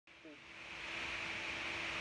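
A steady hiss that grows louder over the first second and then holds, over a faint steady hum.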